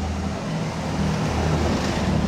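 Steady city street traffic noise: a low rumble of passing cars under an even hiss.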